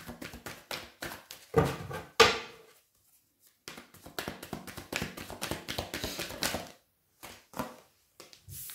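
A deck of tarot cards being shuffled by hand and a card dealt onto the table: quick papery flicks and taps, with a short pause about three seconds in, then a dense stretch of rapid shuffling through the middle.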